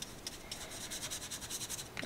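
Princeton Velvet Touch brush bristles rubbing back and forth on watercolour paper, working water into a water-soluble wax crayon swatch: a faint, rapid scratchy brushing.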